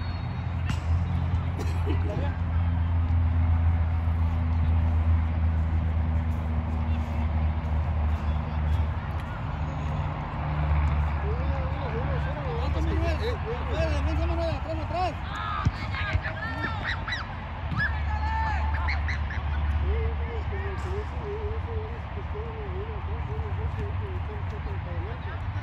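Distant shouts and calls from several men on the field, heard mostly in the middle and later part, over a steady low rumble on the microphone.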